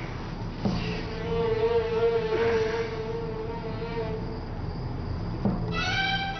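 A steady buzzing tone held for about three seconds over a low hum, then bowed string music coming in just before the end.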